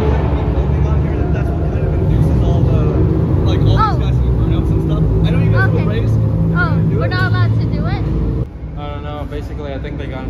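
Car engine running with a steady low rumble as a black sports sedan rolls slowly through a concrete parking garage, with people's voices calling out over it partway through. The engine sound cuts off suddenly about eight and a half seconds in.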